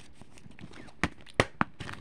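A few sharp plastic clicks from a DVD case being shut and handled, bunched in the second half.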